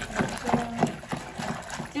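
Wooden dal churner knocking and scraping against the inside of an aluminium pressure-cooker pot as cooked lentils are mashed, an uneven run of knocks about five a second.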